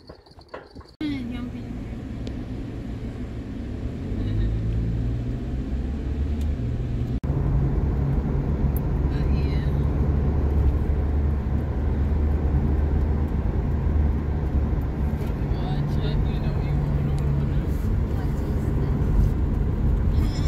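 Car interior noise while driving on a city highway: a steady low engine and road drone whose low hum steps up and down in pitch. It starts abruptly about a second in and gets louder about four and seven seconds in.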